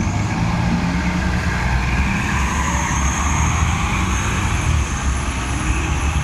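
A city transit bus running loud beside the curb, then pulling away, its engine a steady low rumble.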